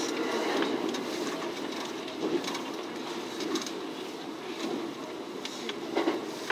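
Running noise of a local electric train heard from inside, just behind the driver's cab: a steady rumble of wheels on rail, with light clicks now and then.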